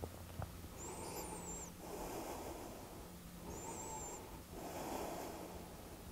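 Faint, slow breathing of a woman holding a yoga twist: about four long breaths, two of them with a thin high whistle.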